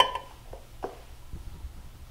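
Faint handling sounds of a stainless ladle scooping chopped tomatoes in a glass bowl, with one soft knock a little under a second in.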